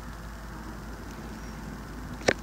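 Steady low background hum and hiss, with no distinct event: room tone.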